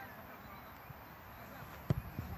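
A football thuds once near the end, a single short sharp strike against faint outdoor background.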